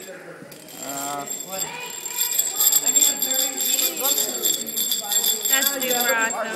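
Metal spur-gear train spinning fast, the meshing gears making a steady high metallic whir and jingle that starts about two seconds in and holds until near the end.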